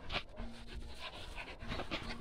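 Dogs panting in quick, short breaths.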